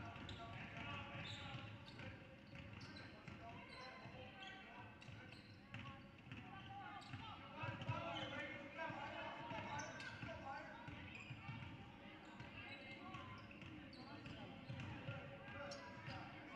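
Basketball being dribbled on a hardwood gym floor during a game, with short sharp knocks over background voices of spectators and players.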